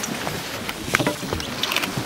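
Steady wash of water and wind around a small boat at sea, with faint distant voices and a couple of small knocks about a second in.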